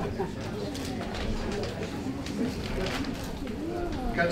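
Low, indistinct murmur of people talking quietly among themselves in a hall, with a few small knocks and rustles.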